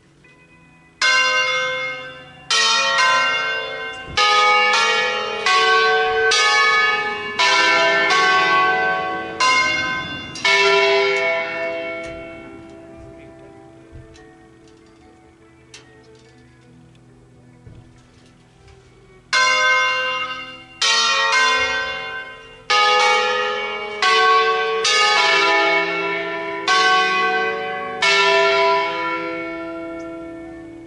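Church tower bells rung in an Italian-style concerto: a quick run of single bell strokes at different pitches, each left ringing. The strokes stop about ten seconds in and the bells die away, then a second run starts just before the twenty-second mark and lasts nearly to the end.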